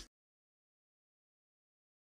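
Silence: the sound track is blank, with music fading out in the first instant.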